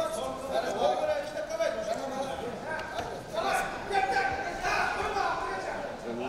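People's voices calling out and talking over one another, fairly high-pitched, echoing in a large hall.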